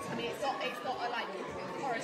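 Diners talking over one another at a dinner table: general chatter of several voices, none clearly in front.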